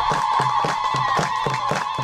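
A crowd claps in time, about four claps a second, under a long, high, trilling ululation held without a break.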